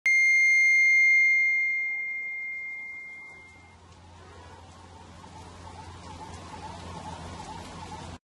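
A single bright chime starts it off, loud for about a second and then ringing away until it fades out after about three and a half seconds. After it there is only a faint steady hiss.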